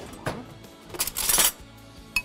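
A metal spoon scraping briefly inside a plastic jug of blended sauce about a second in, as it is dipped in to take a taste for salt. Faint background music underneath.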